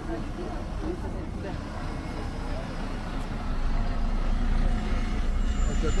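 Road traffic passing close by: a steady low engine rumble that grows louder about halfway through, with passers-by talking over it.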